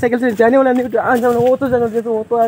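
A man's voice close to the microphone: a run of short, drawn-out syllables held at a nearly steady pitch.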